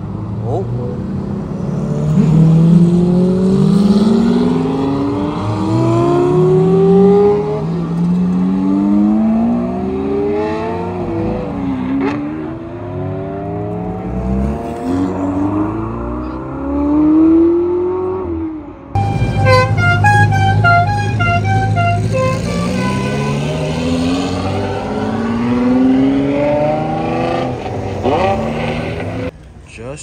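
Supercar engines accelerating hard one after another, each rising in pitch through several upshifts, starting with a Lamborghini Murciélago's V12. Near the two-thirds mark the sound changes abruptly to another car pulling away, with a short run of stepped beeping tones over it.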